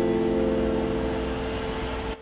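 The tail of an electronic music track: a single held synth note over a hiss, fading slowly after the beat drops out.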